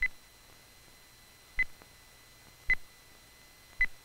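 Sonar pings: four short, high beeps at one pitch, about a second apart.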